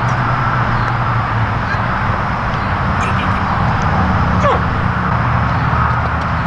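Steady drone of highway traffic.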